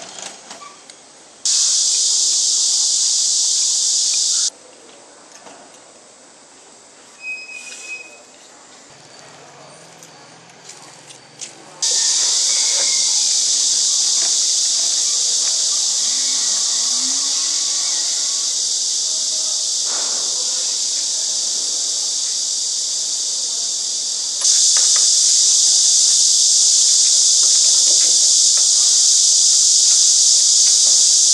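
A loud, steady high-pitched hiss that starts abruptly, cuts out after about three seconds, then returns and runs on, stepping louder near the end.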